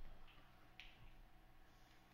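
Near silence: room tone with two faint clicks in the first second.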